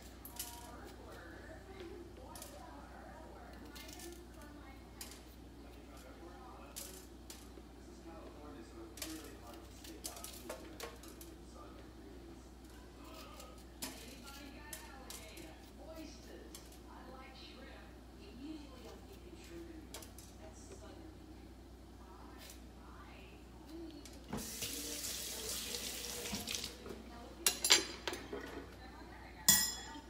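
Small, faint clicks and scrapes of a knife working fresh peppers over a stainless-steel sink as the seeds and stems are picked out. About 24 seconds in, a kitchen tap runs for about two seconds, followed by two sharp knocks near the end.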